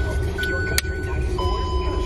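Low rumble of a car heard from inside the cabin, with steady high tones over it. There is a single click about a second in as the screw cap of a plastic sports-drink bottle is closed.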